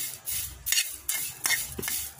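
A spatula stirring and scraping Malabar spinach leaves around a hot pan. The leaves rustle and scrape in quick repeated strokes about every half second.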